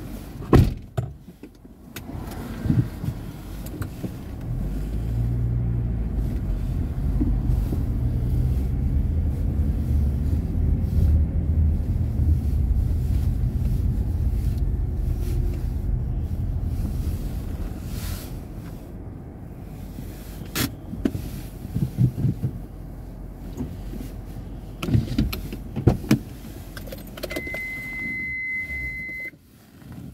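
Low, steady rumble of a motor vehicle running close by, building up a few seconds in and fading out around the middle, with a few sharp knocks throughout. Near the end comes a short, steady high beep lasting about two seconds.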